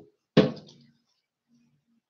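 A single sharp knock on the writing board about half a second in, dying away quickly, followed by a faint low hum.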